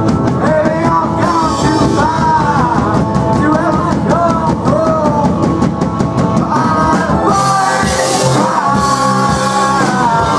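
Indie rock band playing live: a sung vocal line over electric guitars, bass and a steady drum beat, with cymbals washing in briefly about a second in and again near the end.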